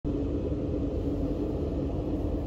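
Steady low rumble and hum inside a passenger train carriage, with one constant hum tone over it.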